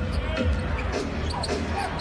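Basketball dribbled on a hardwood court, deep thumps about every half second, over steady arena crowd noise.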